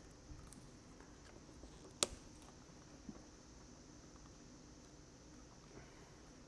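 Faint handling sounds of electrical tape being wrapped around the back of a plastic 6-way round trailer connector plug, with one sharp click about two seconds in.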